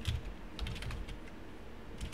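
Typing on a computer keyboard: a quick run of keystroke clicks in the first second, thinning out after that.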